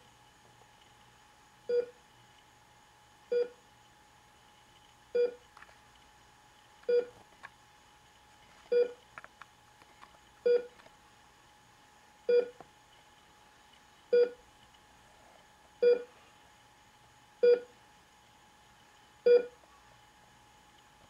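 Heart-monitor beep sounding at a steady pace, a short electronic beep about every second and three-quarters, eleven in all. The steady pace marks a regular heartbeat. A faint steady hum runs underneath.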